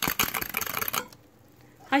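Egg yolks and sugar being whisked by hand in a bowl: quick, even clicks of the whisk against the bowl, about nine a second, that stop about a second in.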